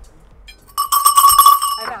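A loud metallic, bell-like ringing about a second long, with a fast rattle of strikes under a steady ringing tone. It starts a little under a second in and stops just before the end.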